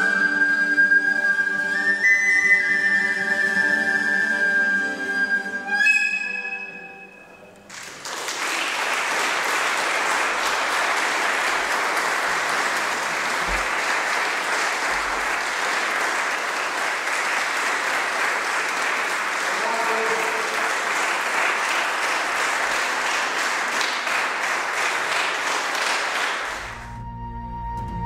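A small flute with a plucked string instrument plays the closing phrase of a piece, the last note dying away about six seconds in. Then an audience applauds steadily for about eighteen seconds.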